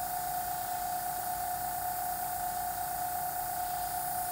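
Gravity-feed airbrush spraying: a steady hiss of air with a constant high-pitched tone beneath it.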